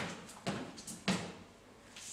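Sneakered feet striking and scuffing a hardwood floor during fast mountain climbers: three quick thuds about half a second apart in the first second and a half.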